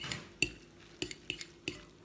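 Metal fork clinking against a ceramic bowl while stirring noodles in sauce: about five sharp, irregularly spaced clinks, the loudest about half a second in.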